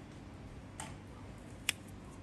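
Two small clicks, a soft one about a second in and a sharper, louder one near the end, over a steady low hum.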